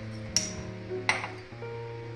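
Background music with steady held notes, and two sharp clinks of a metal spoon about half a second and a second in.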